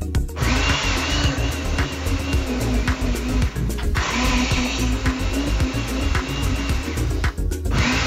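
Countertop blender motor running on a jug of banana and apple with water, in three bursts: about three seconds on, a brief stop, about three seconds more, then another short burst near the end. Background music with a steady beat plays throughout.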